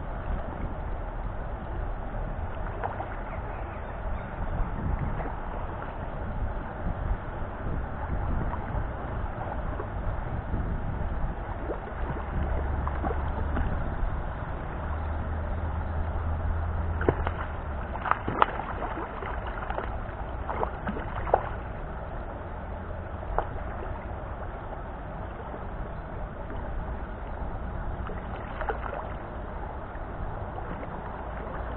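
Hooked trout splashing at the surface, over a steady low rumble of wind on the microphone, with a few sharp irregular clicks a little past halfway.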